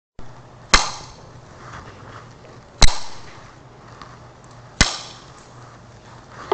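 Three sharp wooden strikes about two seconds apart, each ringing briefly as it fades, from a Buddhist wooden percussion instrument struck to open the dharma talk.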